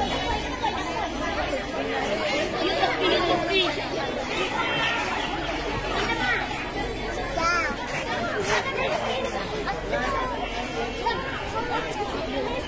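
Chatter of many girls' voices at once, overlapping into a steady babble.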